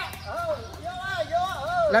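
Speech: a person talking, the voice rising and falling in pitch.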